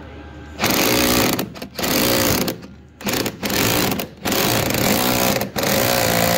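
Cordless Metabo impact wrench hammering in a series of bursts, each up to about a second long, as it drives the centre bolt of a two-arm puller to draw the output flange off the gearbox.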